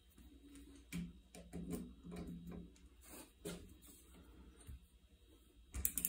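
A torque wrench with socket and extension working the crankcase bolts: faint scattered clicks and taps, then a quick run of ratchet clicks near the end.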